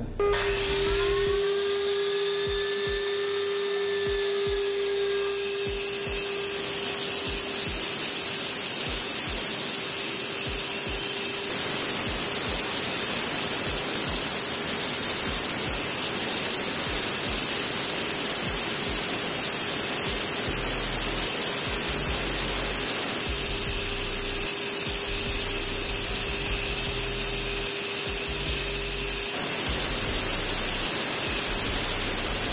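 A Hitachi 230 mm angle grinder with a diamond blade spins up to speed with a rising whine, then runs steadily with a constant motor hum. From about five seconds in it grows louder as the blade cuts a groove into a plastered wall through a dust-extraction shroud.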